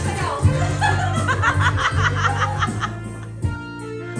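Laughter, a quick run of ha-ha pulses in the middle, over steady backing music playing in the room.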